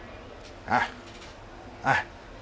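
A man's short, breathy 'ah' about three-quarters of a second in, over a steady low background hum, with the start of his next words just at the end.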